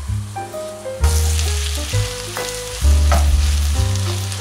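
Raw beef cubes hitting hot pork lard and softened onions in a pot, sizzling as they fry, with the hiss starting about a second in and a few clatters of meat and pot. Background music with held bass notes plays underneath.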